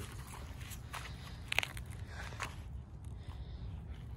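Shoe crunching and scraping on dry leaves, dead grass and loose dirt while stepping on a small dirt mound, in a few scattered crackles, the sharpest about a second and a half in. A low steady rumble lies underneath.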